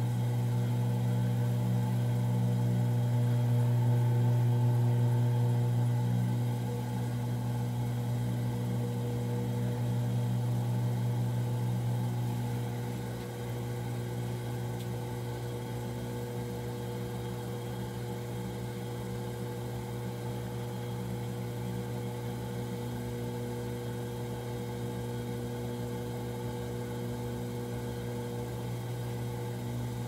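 Electric potter's wheel motor humming steadily as it spins, stepping down a little in level about six seconds in and again about thirteen seconds in.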